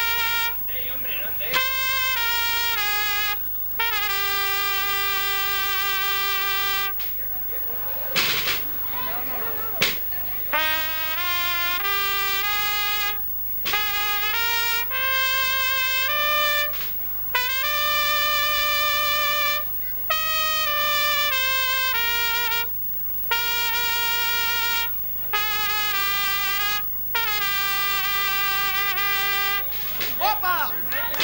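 Unaccompanied solo trumpet playing a slow melody of long held notes with vibrato, in phrases broken by short breaths.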